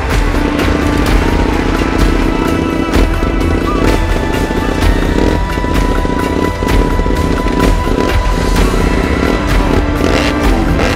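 Indian Scout FTR750 dirt-track racer's engine running loudly, with music playing over it.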